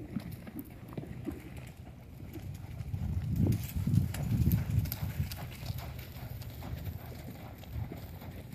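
Hoofbeats of a horse moving on a soft dirt arena as it circles on a lunge line, louder as it passes close by in the middle.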